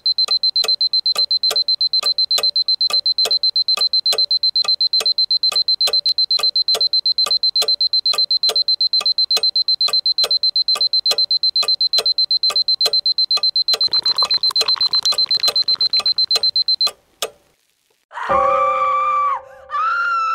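Electronic alarm beeping: a high-pitched tone pulsing rapidly and evenly, which cuts off about 17 seconds in. After a moment of silence, sustained music notes begin near the end.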